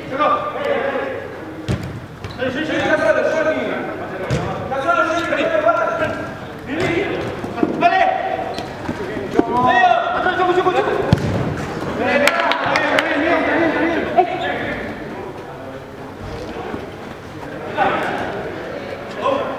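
Players' voices shouting and calling during an indoor five-a-side football match in a large hall, with several sharp thuds of the ball being kicked.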